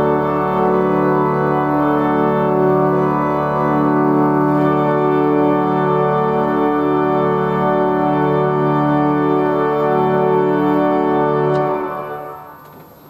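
Compton 'Augmentum' pipe organ playing slow, sustained chords. It stops suddenly near the end, leaving a short reverberant decay.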